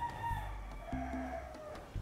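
A rooster crowing faintly: one drawn-out crow that starts high and falls in pitch toward its end.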